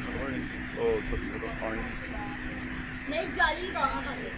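Indistinct voices speaking in short bursts, over a steady low hum.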